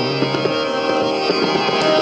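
Hindustani classical accompaniment between vocal phrases: harmonium and drone holding steady notes under light tabla strokes.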